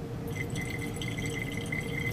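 Sodium thiosulfate solution running from a burette's stopcock into an Erlenmeyer flask at the start of a titration: a faint, steady trickle that begins shortly after the start.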